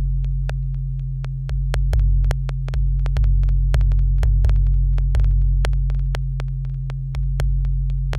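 Live electronic synthesizer music: deep, humming bass tones that step to a new pitch every second or two, under a stream of sharp electronic clicks, several a second.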